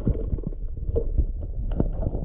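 Muffled sound of water heard from a camera held underwater: a steady deep rumble of churning water with scattered small knocks and clicks as a hand works around a submerged hole.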